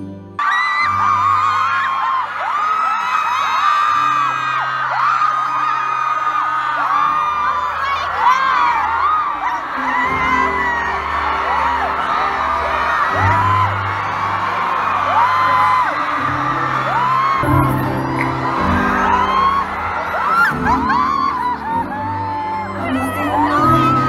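Live pop song at a concert heard from inside the audience: a crowd of fans screaming and cheering loudly, their high voices drowning out the performers' singing over steady bass notes from the sound system. Softer background music at the very start cuts off suddenly about half a second in.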